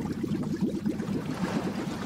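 Bubbling, gurgling liquid sound effect: a dense, even run of short low blips like bubbles rising through water.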